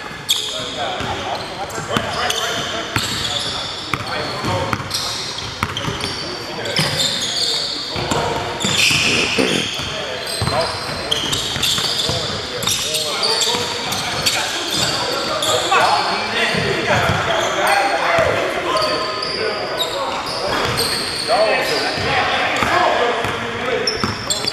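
Basketball bouncing on a hardwood gym floor during a pickup game, with players' voices calling out indistinctly, echoing in a large gymnasium.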